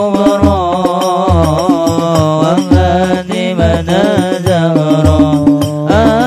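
Sholawat chant sung by a male voice through microphones and a PA, a melismatic Arabic devotional melody. It runs over percussion accompaniment: deep drum beats roughly once a second with sharper strokes between them.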